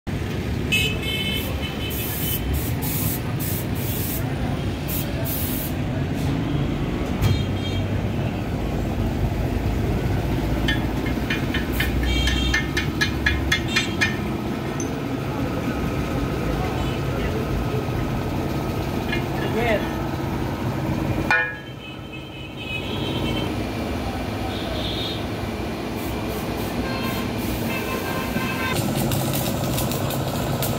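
Busy roadside workshop and street ambience: traffic noise with short vehicle-horn toots, indistinct voices, and scattered sharp knocks. The sound drops abruptly about two-thirds of the way through, then picks up again.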